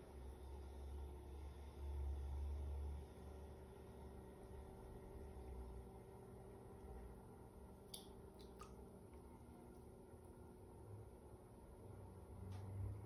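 Electric potter's wheel running with a faint low hum, louder for the first few seconds, under faint wet squishing of clay as a fingertip drags sideways across the inside floor of the opened form to flatten it. Two faint clicks come about eight seconds in.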